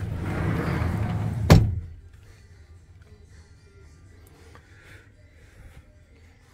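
Clothes and closet rustling close to the microphone for about a second and a half, ending in one sharp knock, then quiet.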